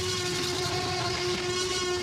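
A steady rumbling noise with a held low hum under it, an even sound effect with no rise or fall.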